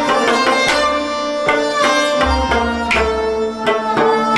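Instrumental passage of Kashmiri devotional mehfil music: hand-drum strokes in a steady rhythm over sustained melody instruments, with no voice.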